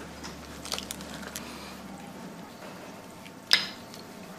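Faint cutlery and eating sounds at a dinner table, with a few light clicks in the first second or so and one short, sharp noise about three and a half seconds in.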